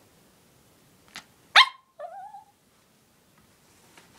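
Small dog barking once, sharp and loud, about a second and a half in, followed by a brief yip whose pitch wavers and falls.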